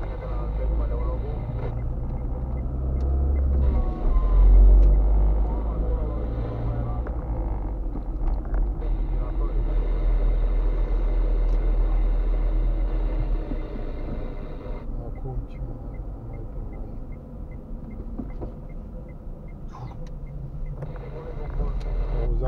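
Engine and road rumble inside a moving car's cabin, with a light, regular ticking in the last several seconds.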